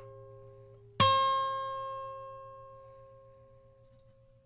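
A single plucked guitar note struck about a second in and left to ring, fading slowly over about three seconds. The ring of the previous note is still dying away at the start.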